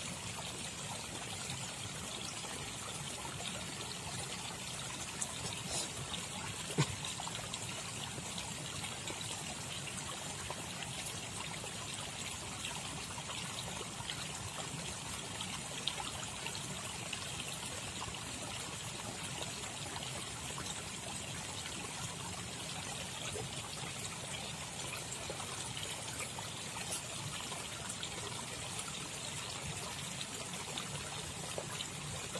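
Flowing river water trickling steadily and evenly.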